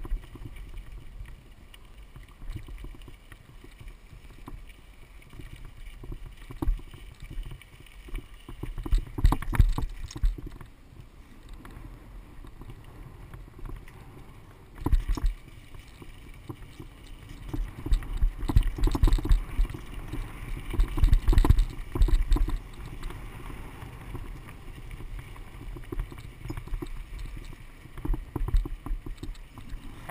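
Mountain bike rolling fast down a dirt trail: a steady rumble of tyres on dirt and wind on the microphone, broken by several louder bursts of rattling and clatter as the bike goes over rough ground.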